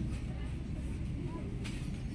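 Steady low rumble of indoor shop ambience, with faint voices in the background and a light click near the end.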